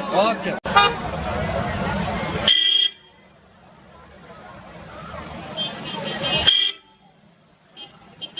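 Outdoor crowd chatter and street traffic with several short vehicle-horn toots, amid the traffic congestion of a crowded tourist town. The noise cuts off abruptly twice and falls much quieter in between.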